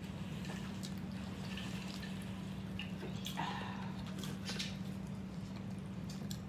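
Faint eating sounds: chewing and the soft, wet squish of hoagie sandwiches being handled and bitten, with small scattered clicks. A steady low hum runs underneath.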